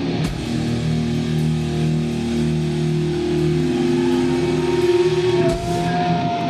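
Heavy metal band playing live, with slow sustained chords on heavily distorted electric guitars, plus drums. A high held note comes in near the end.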